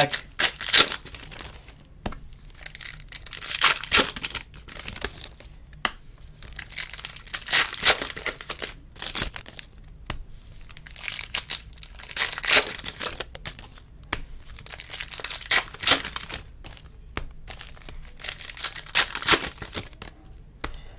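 Foil trading-card pack wrappers being torn open and crumpled by hand: bursts of crinkling and tearing every few seconds.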